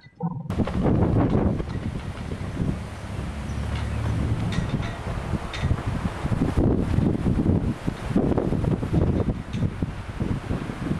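Wind buffeting the camcorder microphone: an irregular low rumble that swells and fades in gusts, starting suddenly about half a second in.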